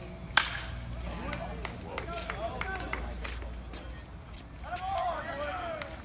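Baseball bat striking the ball once, sharp and loud, about a third of a second in: the crack of an opposite-field home run. Spectators' voices shout and cheer after it.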